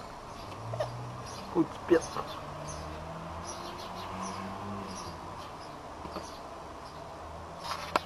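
Pet parrots giving a few short, sharp calls, two loud ones close together about a second and a half in and another near the end, over a steady low background hum.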